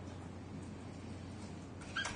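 Quiet hearing-room tone picked up by a desk microphone, with a low steady hum. Near the end there is a brief faint high-pitched squeak.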